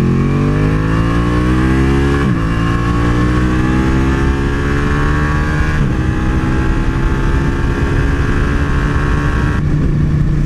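Sport motorcycle engine heard from the rider's seat, its pitch climbing as the bike accelerates, dropping back sharply twice and climbing again, then holding steady at cruising speed, with a rush of wind over it.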